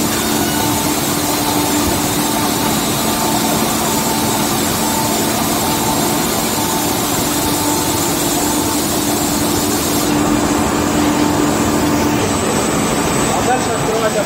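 Kolbus KM 600 perfect binder's gathering line running: a steady mechanical clatter over a low hum. One of the hum tones drops out near the end.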